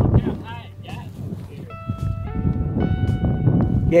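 Background guitar music trailing off, with held notes near the middle, over a low wind rumble on the microphone and faint talking voices.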